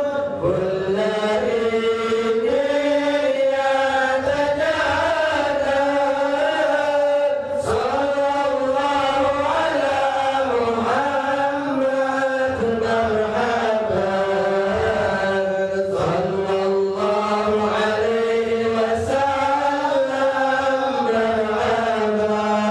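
Male voices chanting a supplication together in a slow, continuous melody.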